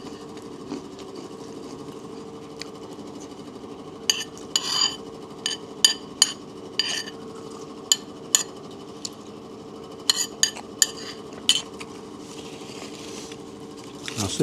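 A metal spoon clinking and scraping against a plate while eating, in a run of irregular sharp clicks that starts a few seconds in and stops a couple of seconds before the end, over a steady low hum.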